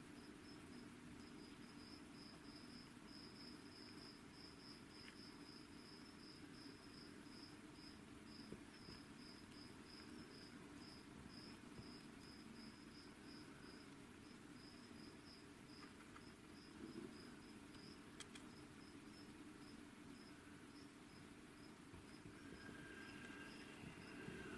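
Near silence: faint room tone with a steady, high-pitched chirping of an insect, about four chirps a second.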